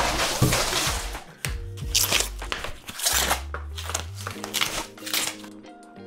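Cardboard and plastic wrapping rustling and crackling as a mountain bike is handled out of its shipping box, loudest in the first second and then in scattered crinkles. Background music plays underneath.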